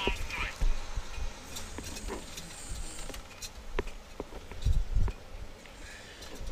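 Volvo 730 semi truck driving at road speed, heard inside the cab: a steady low engine and road rumble, with a few short knocks and thumps, the heaviest about five seconds in.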